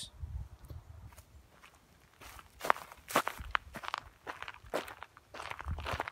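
Footsteps on a forest path littered with dry leaves and twigs: an irregular run of steps that starts about two seconds in.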